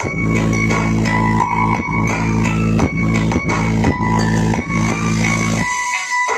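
A DJ dance track with heavy, sustained bass, a regular beat and a high melodic line, played loud through a stacked 'horeg' sound-system rig. The bass cuts out just before the end.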